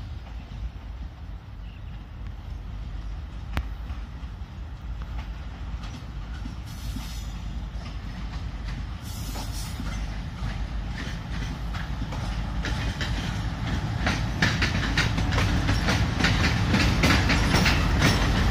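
A diesel-hauled passenger train approaching slowly and drawing level. A steady low engine rumble and wheel noise grow louder throughout, and from about halfway in the wheels clatter in a rapid run of clicks over the rail joints.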